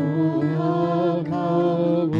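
Live worship song: voices singing long held notes over strummed acoustic guitar.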